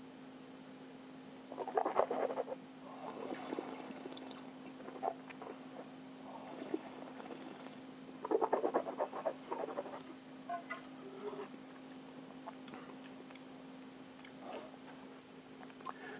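Wet slurping and swishing as a mouthful of white wine is drawn over the tongue with air and worked around the mouth while tasting, in several short, irregular bouts. A steady low electrical hum runs underneath.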